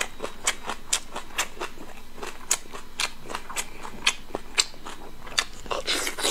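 Close-miked chewing of soft braised meat: irregular wet mouth clicks and smacks, two or three a second.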